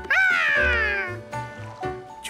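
A cartoon character's wordless cry: one high note that jumps up and then slides down over about a second, over soft background music.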